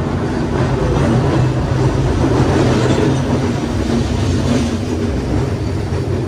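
A streetcar running along its rails close by: a steady low rumble with a held hum, swelling toward the middle and easing off near the end.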